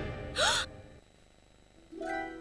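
A girl's short, sharp gasp about half a second in, her voice sweeping upward in pitch, as tense orchestral music dies away; soft strings come in at the end.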